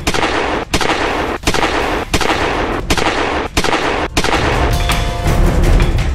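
A series of seven gunshots, evenly spaced about 0.7 s apart, each with a long echoing tail, laid over music. The shots stop after about four seconds and the music carries on.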